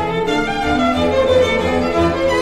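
Background music on bowed strings, sustained notes changing pitch every half second or so.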